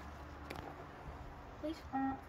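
Quiet low background hum with a single sharp click about half a second in, and a brief spoken word near the end.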